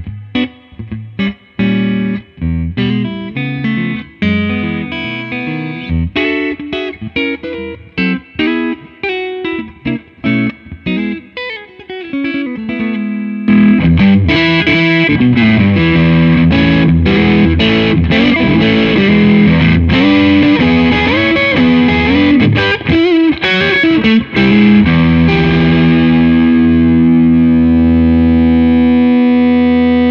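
Gretsch 1955 White Falcon hollowbody electric guitar with TV Jones T-Armond single-coil pickups, played through an amplifier. First come separate picked single-note phrases. About 13 seconds in it turns much louder and denser, with busy lines, and it ends on a held chord that rings out.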